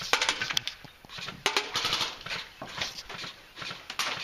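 Runs of rapid, sharp clicks over a patchy rustling hiss: an airsoft rifle firing and its BBs striking, with a dense run in the first half-second and another about a second and a half in.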